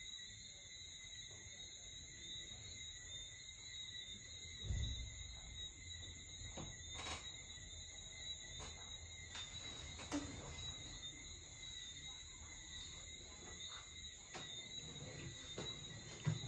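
Quiet room tone with a faint, steady high-pitched whine. There is a soft thump about five seconds in, and a few light clicks.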